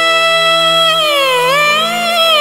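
Devotional bhajan music: a lead melody holds one long note, then bends down in pitch and rises back near the end, over a steady low drone note.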